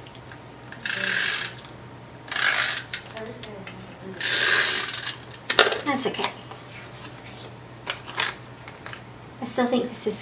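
Tape runner (adhesive roller) drawn across card stock in three short rasping strokes, followed by light clicks and rustles of paper being handled.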